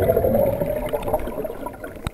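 Water sloshing and gurgling that slowly dies away.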